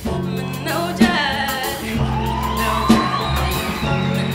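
A woman singing an Amharic song with a live band, her voice over steady bass and a drum beat that lands about once a second.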